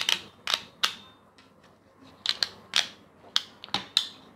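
A small plastic tripod's legs being handled and unfolded: a series of sharp plastic clicks, three in the first second and about six more in the second half.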